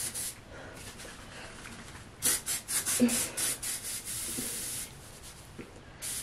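Aerosol dry shampoo spraying into hair: a few short puffs and rustles, then a steady hiss lasting about a second, just past the middle.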